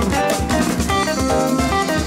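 Instrumental jazz group of guitar, keyboards, bass and drum kit playing, with quick guitar notes over steady drums.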